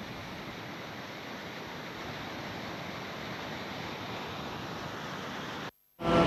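Floodwater from the overflowing Cisanggarung River rushing across a railway track: a steady rushing noise that cuts off abruptly near the end.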